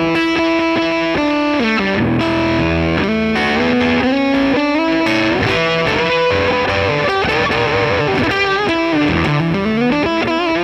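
Stratocaster electric guitar played through a hand-built Jordan Bosstone fuzz clone into a Dumble-style amp: a distorted single-note lead line. It opens with fast repeated picking on one note, moves through string bends and held, sustaining notes, and ends with wide vibrato.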